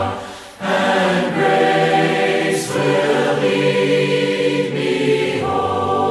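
A choir singing a hymn in long held notes, with a short breath between phrases about half a second in.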